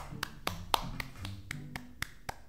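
A person clapping hands, a quick run of sharp claps, about four a second.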